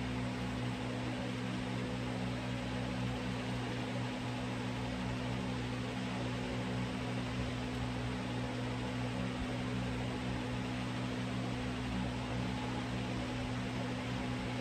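Steady low hum under an even hiss, unchanging throughout, with no other events.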